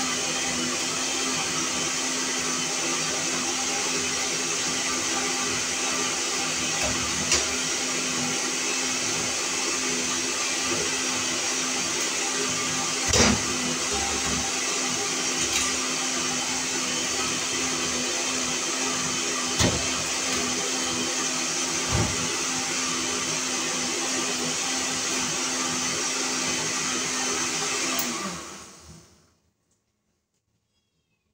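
Countertop electric blender running steadily, blending coconut, with a few light knocks over it. It fades out to silence about two seconds before the end.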